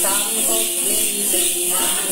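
Then ritual music: a đàn tính long-necked lute being plucked, with a continuous shaken jingle of small bells, and a voice singing along.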